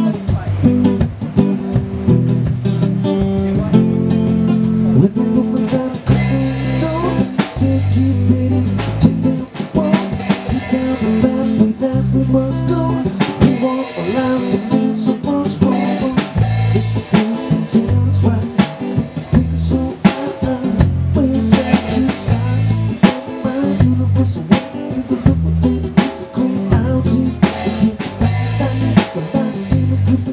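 Live instrumental jam from a one-man band: electric guitar over repeating low bass notes, with a drum beat joining about six seconds in and carrying on steadily.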